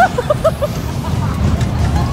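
Riders' voices on a moving amusement-park ride: a rising whoop right at the start, then a quick run of short, clipped vocal sounds, over the steady low rumble of the ride.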